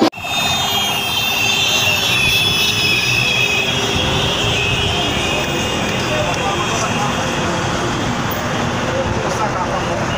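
Busy street noise: many voices mixed with motorcycle engines and traffic, with a high wavering tone over the first few seconds.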